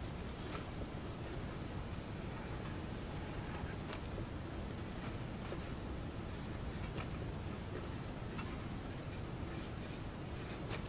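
Felt-tip ink pen drawing on paper: faint, short scratchy strokes every second or so, one longer stroke about three seconds in, over a steady low room noise.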